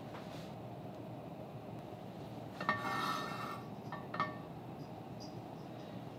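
Gas burner running steadily under a carbon steel skillet as its thin oil coating heats toward smoking. About two and a half seconds in there is a brief rubbing sound with a faint ring, and a small tick about a second later.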